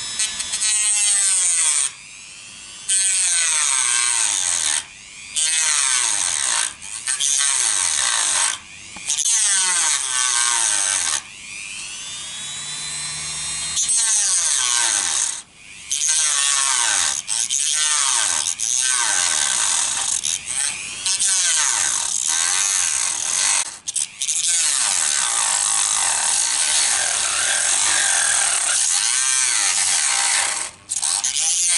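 Dremel rotary tool with a small cut-off wheel cutting a plastic panel, run at low revs so it cuts rather than melts the plastic. It runs in spells broken by short pauses, its whine rising and falling in pitch.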